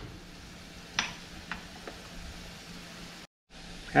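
Scallops, onion and curry powder sizzling faintly in a frying pan. There is a light click about a second in and two softer ticks soon after. The sound drops out completely for a moment near the end.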